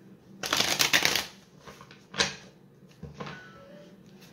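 A deck of tarot cards being shuffled by hand: a rapid flutter of card edges lasting under a second, starting about half a second in, then a single sharp snap about two seconds in and softer card sounds after.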